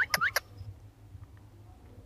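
Rose-ringed parakeets giving a few short, sharp calls in the first half-second, then faint background hiss.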